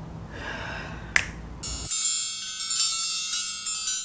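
A single finger snap about a second in, followed by a sparkling, chime-like magic sound effect: many high ringing tones shimmering together, the cue for a tea set being conjured up.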